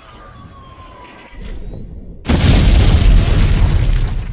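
Explosion sound effect: a sudden loud boom a little over two seconds in that rumbles on, after a quieter swell.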